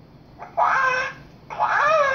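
Hatchimal toy's electronic creature voice calling from inside its egg: a short, high chirp about half a second in, then a longer warbling call from about a second and a half.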